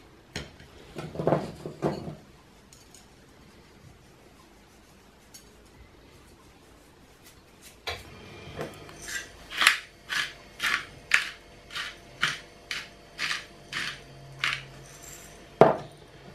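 Meat slices handled on a china plate, then a hand-twisted pepper mill grinding black peppercorns in a regular run of sharp clicks, about two a second, through the second half.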